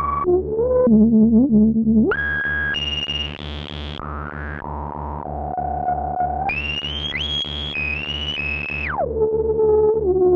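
Ciat-Lonbarde Peterlin (Benjolin-type synth): one oscillator through its resonant filter, the rungler stepping the filter's tone in jumpy, stepped patterns over a steady low pulse about four times a second. The filter's peak sits low and wobbling at first, leaps high about two seconds in, falls back midway, climbs high again and drops sharply near the end as the knobs are turned.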